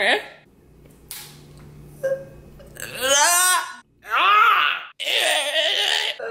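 A man's exaggerated wordless vocal noises: a quiet, low drawn-out croak like a burp, then from about halfway a run of loud wails that slide up and down in pitch, like mock crying.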